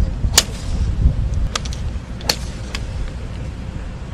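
Golf balls struck by drivers on a practice range: one sharp crack about half a second in, then three fainter, more distant strikes, over a steady low rumble.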